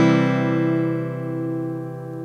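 Open C major chord on an acoustic guitar, strummed once just before and ringing out, fading slowly.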